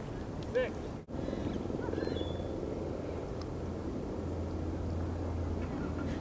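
Steady open-air background noise with a low rumble. A brief rising-and-falling call comes about half a second in and a short high chirp about two seconds in.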